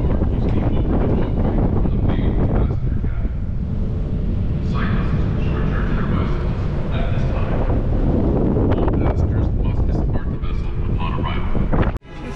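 Strong wind buffeting the microphone on the open deck of a moving ferry, a continuous low rumble, with indistinct voices coming through in places.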